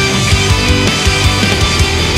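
Loud rock music from a band's studio recording, dense and steady with a regular driving beat.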